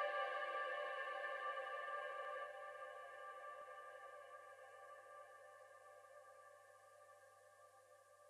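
Ambient electronic music: a held chord of several steady tones, fading slowly away toward near silence as the mix ends.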